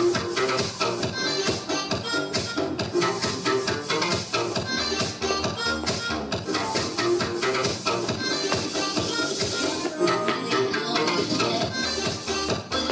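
Dance music with a steady beat playing for an aerobics routine.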